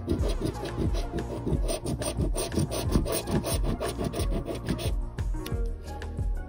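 A coin scraping the coating off a paper scratch-off lottery ticket in quick, repeated back-and-forth strokes.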